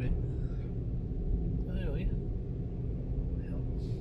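Steady low rumble of a car on the move, heard from inside the cabin: engine and tyre noise on the road. A brief bit of voice comes about halfway through.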